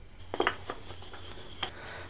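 A few light knocks and clicks of wooden blocks being handled and shifted against each other, mostly in the first second, with one more near the end.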